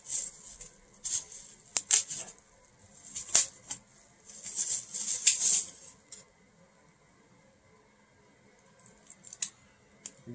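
Mail package being opened by hand: irregular bursts of rustling and crinkling of plastic and bubble wrap with a few sharp clicks, over about the first six seconds, then a few faint clicks near the end.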